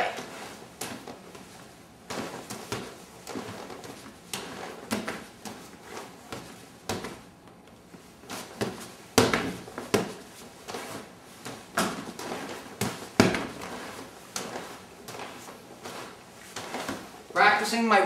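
Hands slapping and knocking against a freestanding padded punching bag and its padded training arm during fast strike-and-parry drills: an irregular run of slaps and thuds, the sharpest about nine and thirteen seconds in.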